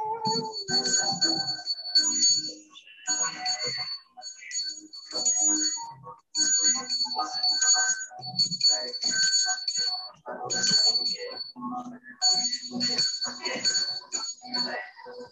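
Small metal hand bell shaken by hand, its clapper striking rapidly. It rings in a series of short bursts with brief pauses between them, giving clear, high ringing tones.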